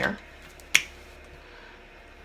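A single sharp click of a marker being handled, about three-quarters of a second in.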